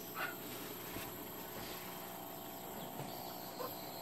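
Quiet outdoor background with two brief, faint animal calls, one just after the start and one near the end.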